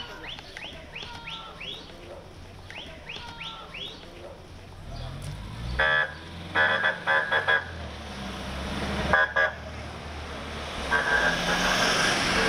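Short rising chirps like birdsong for the first few seconds; then a vehicle engine draws near and an emergency vehicle's horn sounds in a series of short toots about six seconds in, once more about nine seconds in, and again near the end as it passes close.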